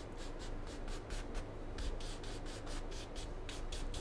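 Wide bristle brush scrubbing oil paint across a canvas in quick, even back-and-forth strokes, several a second, as the sky is blended.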